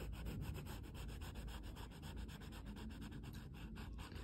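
Paper blending stump rubbing charcoal and graphite shading into drawing paper in quick, even back-and-forth strokes, several a second.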